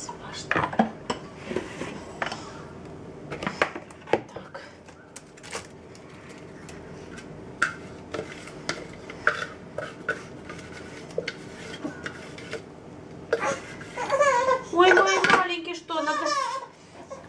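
Scattered plastic and metal clicks and knocks as a food processor's metal grating disc and plastic lid are handled and taken apart over a bowl, clearing out potato pieces the grater missed. A baby's voice comes in near the end.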